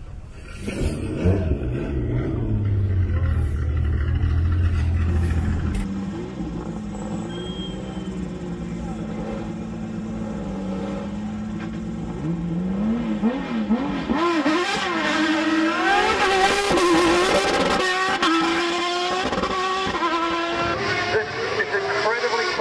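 Mid-mounted Formula Renault 3.5 naturally aspirated V6 race engine in a custom rally car. It runs with a deep, low idle, then settles into a steadier idle with small blips. About twelve seconds in it revs up hard and climbs in pitch again and again through quick upshifts as the car accelerates away.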